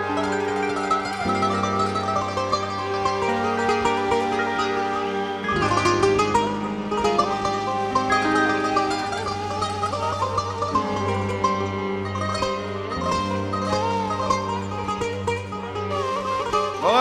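Instrumental introduction of an arabesk song played live by an orchestra: a kanun plays plucked melodic runs over held violin and cello lines. A low bass part comes in about five and a half seconds in.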